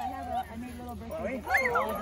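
A young dog vocalising briefly among people's voices, the loudest sound coming about one and a half seconds in.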